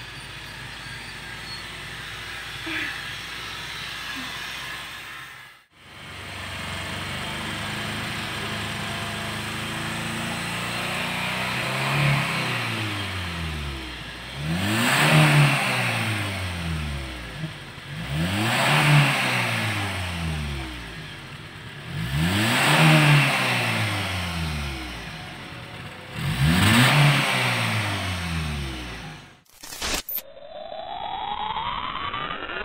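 Honda Jazz's four-cylinder petrol engine heard at the exhaust, idling and then revved four times, about four seconds apart, each rev rising and falling back to idle. This is the throttle being blipped to clear loosened carbon out after a carbon-cleaning engine treatment.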